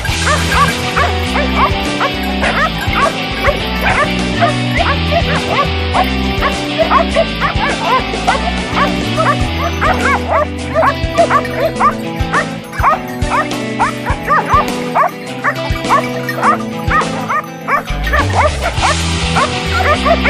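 A pack of Segugio Maremmano hounds barking and yelping in quick, overlapping calls as they bay at and worry a wild boar, with background music playing over them.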